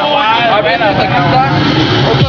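A man's voice rapping freestyle in Spanish, loud and close, with the bass of the backing hip-hop beat dropped out.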